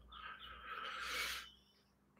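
A person's soft, breathy exhale, lasting about a second and a half.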